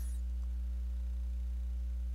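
Steady low electrical hum with a few faint higher overtones.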